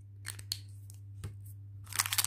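Small plastic toys and a clear plastic wrapper being handled on a table: a few faint clicks, then a burst of plastic crinkling near the end as a bagged eraser figure is picked up.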